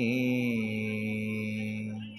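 A man chanting a devotional mantra, holding one long note over a steady low drone; the note begins to fade near the end.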